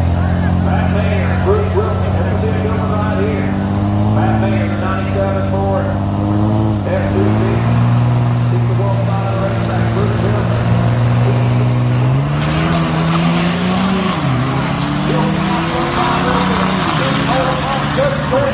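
Two diesel pickup trucks at a drag strip start line, one a 2005 Dodge Ram 2500 with the 5.9 Cummins. Their engines run at held revs while staging, stepping up and down in pitch, then launch about twelve seconds in, the sound turning louder and rougher as they pull away down the track.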